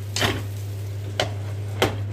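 A steady low hum with a short rush of noise near the start, then two sharp clicks a little over half a second apart, the second near the end.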